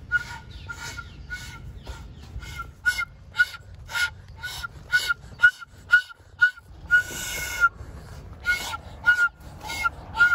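Wooden end-blown flute blown in short, honking notes on nearly one pitch, about two a second, with one longer held note about seven seconds in.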